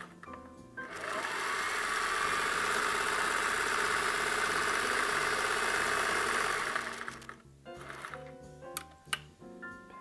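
Singer sewing machine running steadily at speed as it top-stitches a seam through layered plaid fabric, starting about a second in and stopping about seven seconds in. A few light clicks follow once it stops.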